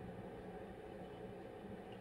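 Faint room tone with a low steady hum.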